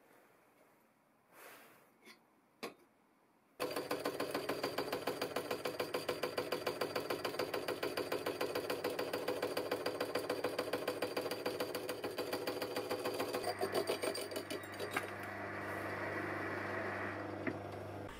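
Hole saw turning in a lathe chuck, cutting a notch into thin-wall steel tube: a sudden start, then a fast, even pulsing chatter as the teeth bite into the tube. Near the end the chatter gives way to a steadier, smoother running sound that fades. A few light clicks of tube handling come before it.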